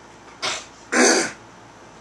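A man clearing his throat: a short breathy sound about half a second in, then a louder, longer throat clear about a second in.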